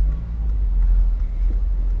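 Toyota MR-S's mid-mounted 1ZZ-FE inline-four engine running as the open-top car drives along, heard from the cabin as a steady low rumble with a faint engine drone.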